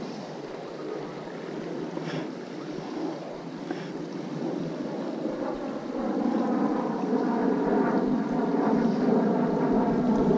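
Creek water flowing and rippling, heard close up, with some wind on the microphone; it gets louder about halfway through.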